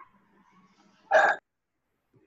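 A single short, loud sound from a person's throat about a second in, lasting about a quarter of a second.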